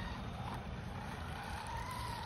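Electric radio-controlled monster truck whining as it drives and slides through snow and slush, the motor whine wavering in pitch, over a steady low rumble.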